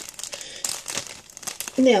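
Small plastic bag crinkling and rustling in irregular crackles as it is handled.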